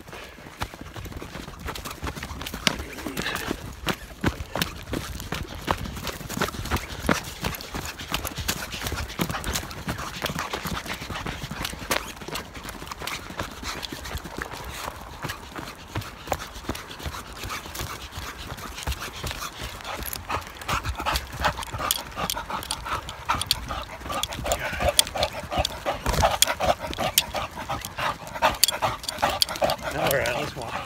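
Running footfalls of a person and an English bulldog on a dirt trail, with the bulldog's heavy, rapid panting, which gets louder in the last ten seconds as the dog runs up close.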